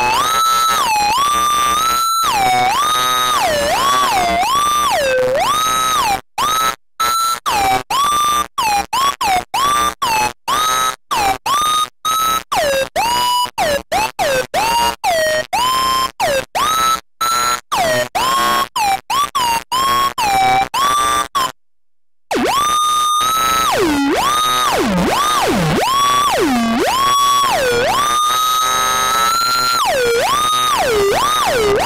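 Web-based virtual theremin playing a melody on its own: a single gliding electronic tone with strong overtones, swooping up and down in pitch. From about six seconds in it is cut into quick short notes with brief gaps, stops for under a second around twenty-one seconds, then returns to long slides, some dipping deep.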